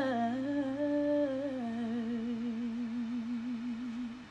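A woman's voice holds one long note with a wide, even vibrato. It steps down in pitch over the first second and a half, then stays low and fades out at the end.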